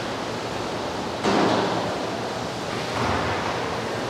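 Running and splashing water, a steady rushing that swells louder a little over a second in and again about three seconds in.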